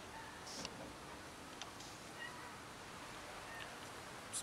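Hungry stray domestic cat meowing a few times, short and faint.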